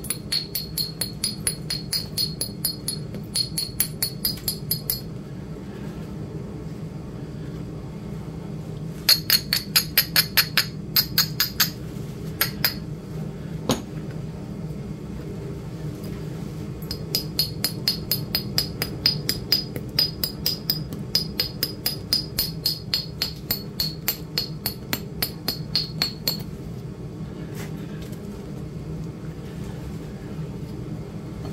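A small hand-held tapping tool striking the edge of a raw flint slab in quick light taps, about three to four a second, each with a high ringing ping from the stone. The taps come in three runs with pauses between, the middle run the loudest, then only a couple of single clicks.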